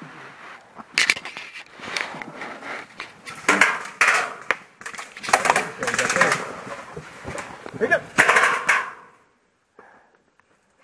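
Airsoft guns firing in scattered pops and short strings, mixed with distant voices; it falls away about nine seconds in.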